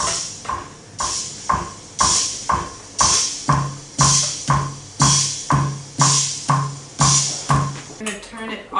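Wurlitzer Side Man electromechanical drum machine playing a rhythm pattern: a steady beat of about two strokes a second, each with a hissing brush-and-cymbal sound. A low drum joins in on every stroke about halfway through.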